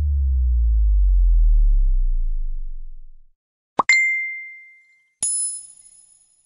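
Electronic transition sound effects: a deep bass tone that slowly falls in pitch and fades out over about three seconds, then two dings, the second higher and ringing longer than the first.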